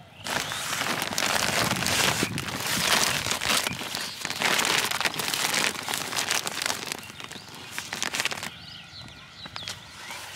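Woven polypropylene sack rustling and crinkling as hands handle and open it, with zucchini shifting inside. The rustling is loud and uneven, then dies down after about eight and a half seconds.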